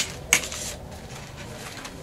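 A handmade paper journal set down on a tabletop: one light knock about a third of a second in, then faint paper handling sounds as it is opened to a signature.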